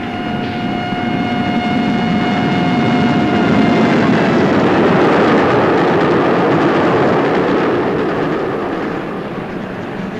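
A train whistle holds one long steady note for about four seconds, sagging slightly in pitch as it ends, over the rumble of a moving train that swells to its loudest mid-way and then eases off.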